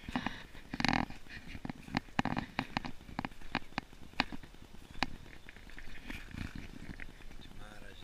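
Irregular sharp clicks and short rustles, the handling noise of a handheld camera carried along a gravel path and pushed through plant leaves.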